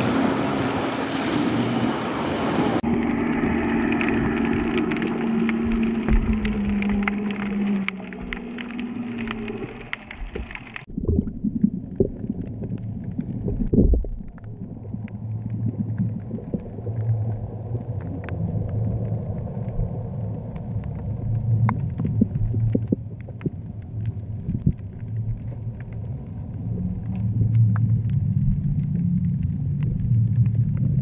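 Waterside sound with a steady low hum that drops in pitch. About 11 s in it gives way to underwater sound from a GoPro camera submerged inside a homemade bottle fish trap: a muffled low rumble with scattered clicks and pops and a faint steady high whine.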